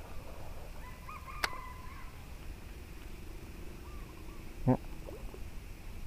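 A fishing rod with a spinning reel being cast: a sharp click about a second and a half in, and a short low thump a little before the end, which is the loudest sound. Faint short bird calls come in between.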